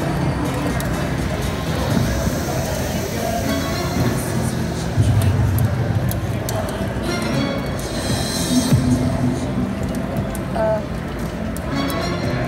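Sphinx 4D video slot machine playing its bonus-round music and sound effects, with indistinct voices in the background.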